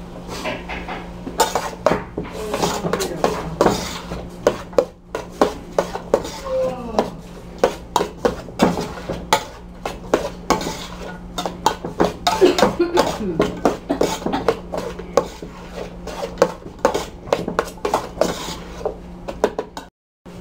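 A metal spoon stirring chopped vegetables in a stainless steel pot, clinking and scraping against the pot's sides in quick, irregular knocks.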